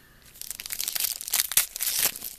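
Shiny plastic-foil wrapper of a 2013 Score football card pack crinkling as it is handled and pulled open, starting about half a second in, with a cluster of sharper crackles near the end.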